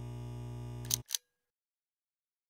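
Steady electrical hum of a neon sign, cut off about a second in by two sharp clicks as the sign switches off.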